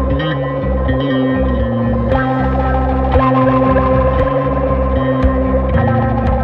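Instrumental heavy psychedelic stoner rock: an electric guitar through chorus and echo effects over sustained low bass notes, with occasional percussion hits from about two seconds in.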